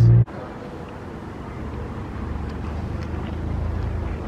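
A low drone inside a car cuts off abruptly a quarter second in. Steady outdoor parking-lot ambience follows: an even hiss with a faint low rumble of traffic.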